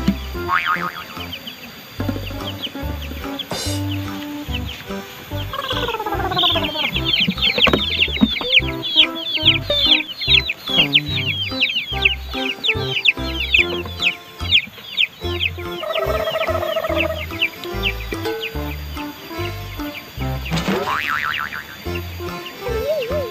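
Chicks peeping: a rapid run of high, falling peeps, about four a second, for several seconds through the middle, over background music with a steady bass beat.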